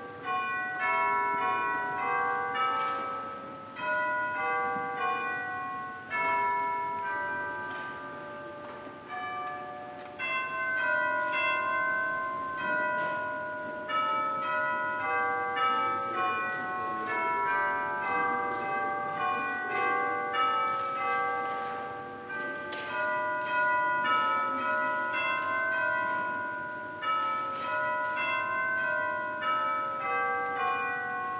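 Church bells ringing a continuous run of struck notes at about two a second, each note ringing on under the next.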